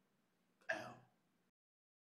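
A man's voice saying one short word, 'out', that starts sharply about two-thirds of a second in.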